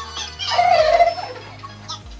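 Background music with one loud, wavering cry of about half a second, a little way in.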